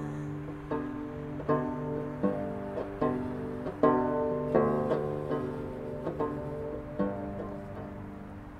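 Instrumental duet of banjo and bowed musical saw: slow, evenly spaced banjo notes, each ringing out and fading, under the held tone of the saw.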